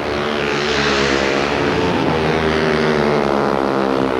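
Two speedway motorcycles with 500cc single-cylinder methanol engines racing flat out, their overlapping engine notes running steadily.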